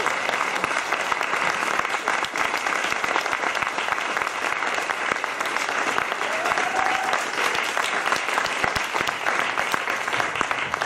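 Audience applauding steadily after a live dance performance.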